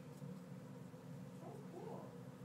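Quiet room tone with a steady low hum, and two faint, short rising sounds near the end.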